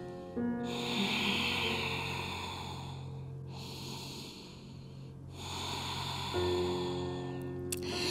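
Soft background music with long held notes, and three long, slow breaths heard close to the microphone.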